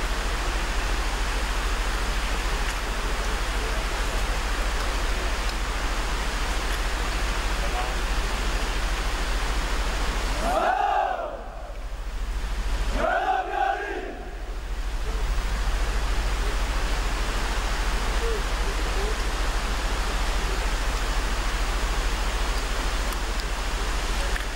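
Steady rushing hiss of large outdoor fountains. About 11 and 13.5 seconds in come two drawn-out shouted calls, as from parade-ground commands given to a military honour guard.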